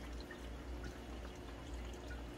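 Faint dripping of water from a wet hydroponic grow deck and its filter sponge into the water tank as they are handled, over a low steady hum.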